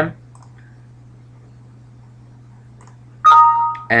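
A faint steady hum, then a little over three seconds in a loud two-note electronic chime, high then low, lasting about half a second.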